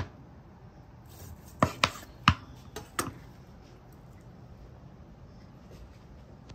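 Large knife cutting through a rack of smoked pork ribs on a cutting board, the blade knocking sharply against the board about six times within the first three seconds, then only faint handling.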